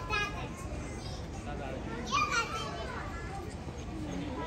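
Children's voices calling out among zoo visitors, two short high-pitched bursts, the louder one about two seconds in, over a steady background hum.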